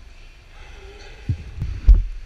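Three dull, low thumps in the second half, the last and loudest just before the end, over a faint wash of water.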